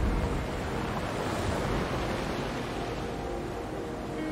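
Ocean waves washing in, one surge swelling about a second in and easing off, with soft ambient music faintly underneath.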